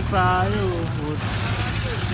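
Low, steady rumble of a slow-rolling Toyota Hilux bakkie's engine, with a person's voice calling out briefly in the first half second.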